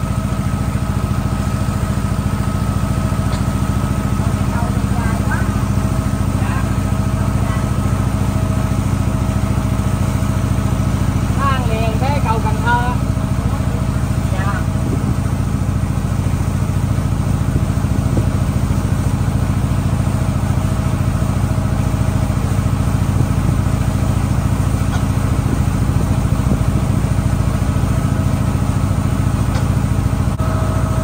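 A small riverboat's engine running steadily under way, a constant drone with a fixed whine over it. Brief voices come through about halfway.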